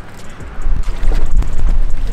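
Wind buffeting the microphone: a loud, low rumble that dips briefly, then swells about half a second in and stays strong.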